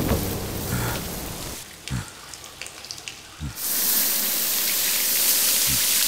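Water spraying from fountain jets: a steady hiss that swells up about halfway through, after a quieter stretch. Deep thuds sound about two seconds in, again just before the hiss begins, and once more near the end.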